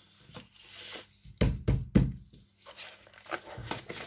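A large hardback book handled on a wooden table with gloved hands: paper rustling, then three sharp knocks in quick succession about a second and a half in, and lighter clicks and rustles near the end.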